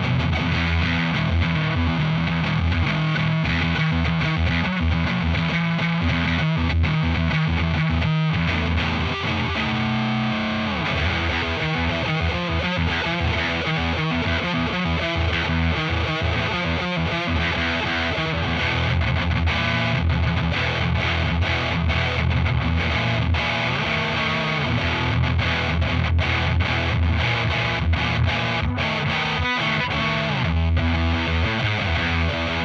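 Electric guitar playing heavy distorted riffs through an Arion Metal Master SMM-1 distortion pedal, a clone of the Boss HM-2, into a Laney VC30 valve combo. Low sustained chords, with a downward slide about ten seconds in.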